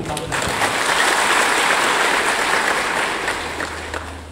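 A large audience applauding in a big hall. The clapping swells up just after the start, holds, and dies away near the end.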